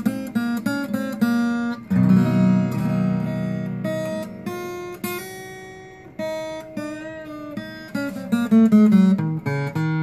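Short-scale parlor-size acoustic guitar played with a riff: a quick run of picked notes, then a strummed chord about two seconds in that rings out and fades, then more picked notes near the end. The tone is full and rich for a small guitar.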